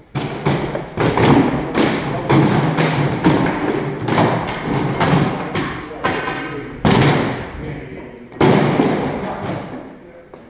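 A sparring axe and a rubber-headed spear knocking against heavy plywood shields in a quick run of blows, two or three a second, with the two hardest hits about seven and eight and a half seconds in.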